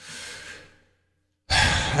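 A man's breathy sigh lasting under a second, followed by a silent pause; a man starts speaking near the end.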